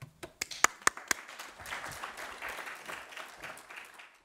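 Audience applauding: a few loud single claps in the first second, then steady applause from the whole audience that fades out at the end.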